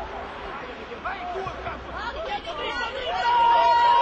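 Children and adults shouting and calling out together on a rugby pitch, many voices overlapping. The voices get louder about three seconds in as play breaks open, with one long, steady, high note near the end.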